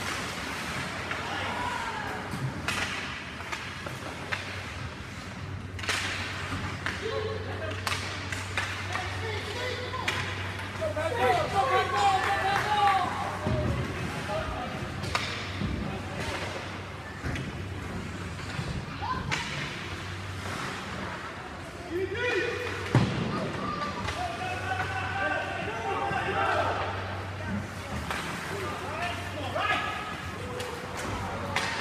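Ice hockey game sounds in an arena: sticks and puck clacking and thuds against the boards, with spectators and players calling out, loudest in two stretches of shouting. A steady low hum runs underneath.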